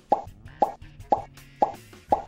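Four short cartoon pop sound effects, about half a second apart, each a quick drop in pitch. They mark items popping onto the screen one by one.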